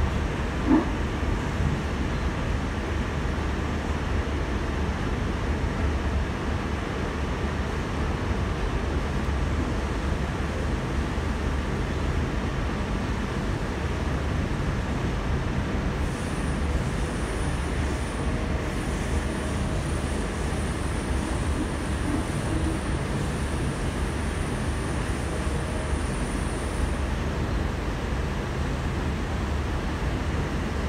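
Steady running rumble and rail noise heard from inside a carriage of a Sydney Trains K-set double-deck electric train travelling at speed. A short knock comes under a second in, and a faint high whine starts about halfway through and stops near the end.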